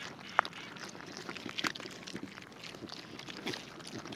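Piglets rooting in loose dirt with their snouts: a soft, steady rustle of soil with many small clicks, and one brief sharper sound about half a second in.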